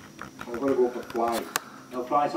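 Speech only: a voice speaking two short phrases in a small room, with a couple of brief clicks about one and a half seconds in.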